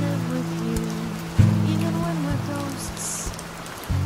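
Acoustic guitar playing sustained chords, with a new chord struck about a second and a half in, over a steady hiss of rain.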